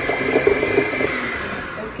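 Electric hand mixer running steadily with a high motor whine, its beaters whipping butter and sugar together in a stainless steel bowl (the creaming stage of cupcake batter). The whine dies away near the end as the mixer is switched off.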